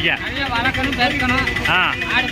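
Men's voices talking, with vehicle engine noise running underneath.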